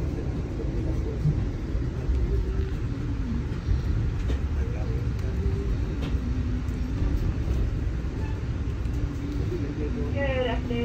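Steady low rumble of a moving passenger train, heard from inside the coach.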